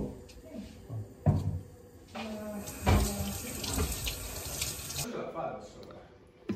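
Kitchen tap running water into the sink, shut off abruptly about five seconds in, with a couple of sharp knocks against the counter or sink just before and during it.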